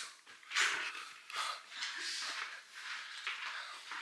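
Rustling and bumping of a handheld camera being picked up and carried, with irregular handling noises.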